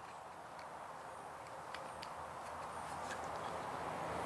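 Faint clicks and handling noise of flexible black plastic drip-irrigation tubing, its folded end being pinched and cupped in the fingers, over a low hiss that slowly grows louder.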